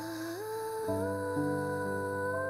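Slow, soft background music: a melodic line gliding up between notes over sustained low chords, with new held notes coming in about a second in.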